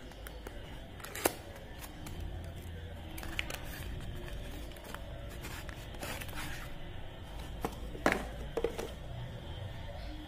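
Cardboard box being handled and opened: rustling and scraping, with a few sharp clicks and knocks. The loudest come a little over a second in and about eight seconds in, as a plastic-cased solar charge controller slides out of the box.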